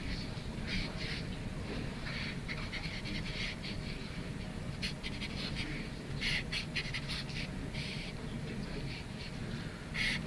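Marker drawing on a whiteboard: short scratchy strokes, coming in scattered runs with a busier cluster about six seconds in, over a steady low room hum.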